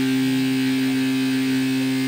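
Surgical robot's cutting tool running with a steady hum at one unchanging pitch and its overtones, during a plunge cut into the knee bone.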